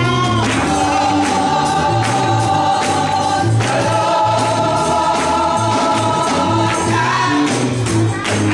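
Gospel music: a choir sings two long held phrases over a pulsing bass line and a steady drum beat.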